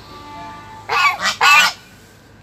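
A goose honking loudly twice in quick succession, two harsh calls close together.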